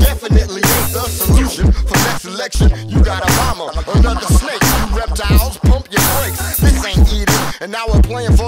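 Hip hop music: a beat with heavy, repeated bass drum hits and rapped vocals over it.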